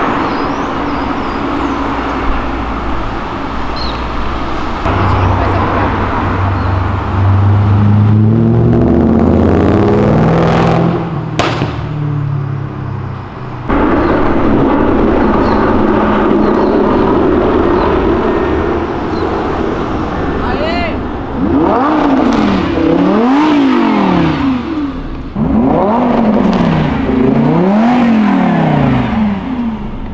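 Lamborghini Huracán's V10 engine pulling away in traffic, rising then falling in pitch. In the second half it revs up and down several times in quick succession, about once a second.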